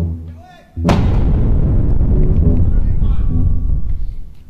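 A sudden loud blast about a second in, then about three seconds of dense, heavy low rumbling like a bomb-strike barrage. A few low sustained keyboard notes come just before the blast.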